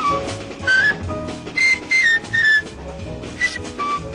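Jazz quartet recording: a soprano saxophone plays short, high phrases with small pitch bends over piano chords, bass and drums with cymbals.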